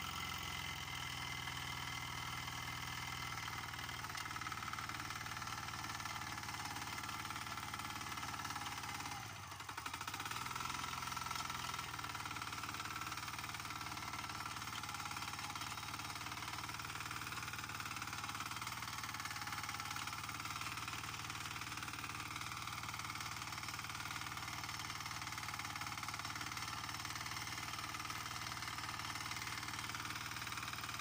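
Weima walk-behind tractor's single-cylinder engine running steadily under load as it pulls a homemade potato digger through the soil. About nine seconds in, the engine note drops briefly in pitch and level, then picks up again.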